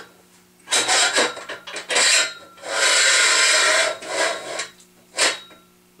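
Metal scraping and rubbing in a series of strokes as the drill press's table bracket, with its gear rack, is slid down the steel column. The longest scrape, about three seconds in, lasts about a second, and a short sharp scrape comes near the end.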